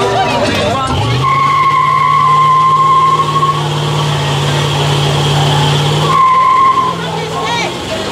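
An old pickup truck doing a burnout: its engine revs up about a second in and is held high while the tyres squeal steadily for about five seconds. A second short squeal follows, then the engine sound falls away as the truck moves off.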